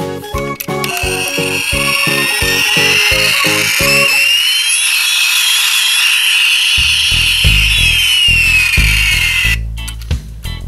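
Electronic jet sound effect from a battery-powered toy F-35 Lightning II: a hissing engine whine that climbs in pitch, then later falls, and cuts off abruptly near the end, over background music.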